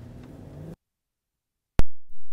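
Chrysler Pacifica's V6 engine pulling away, its pitch rising slightly, cut off abruptly under a second in. Near the end, a single sharp, very loud hit.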